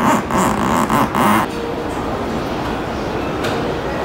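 Background music with a beat that stops about a second and a half in, leaving steady, even background noise.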